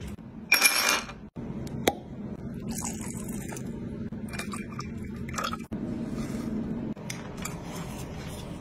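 Glassware being handled: a short loud rush of noise about half a second in, a sharp clink at about two seconds, then lighter clinks and scrapes.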